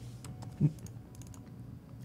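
Scattered light clicks of typing and clicking on a laptop keyboard.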